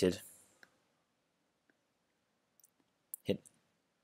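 A few faint computer mouse clicks, spaced about a second apart, with a short spoken word near the end.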